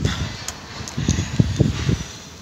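Handling noise from a phone camera being moved about inside a car: a few irregular low bumps and rustles in the second half.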